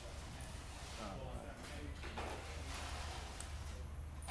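Indistinct background voices over a steady low hum, with one sharp click about three and a half seconds in.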